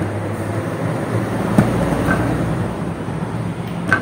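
Small clicks and taps as wires are worked onto the screw terminals of a wall switch with long-nose pliers, two of them standing out, over a steady low hum.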